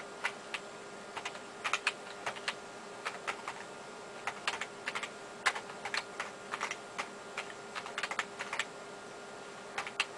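Typing on a computer keyboard: irregular runs of key clicks that stop shortly before the end. A faint steady hum runs underneath.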